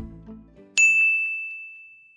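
Background music stops, and about three quarters of a second in a single bright chime strikes and rings on, slowly fading.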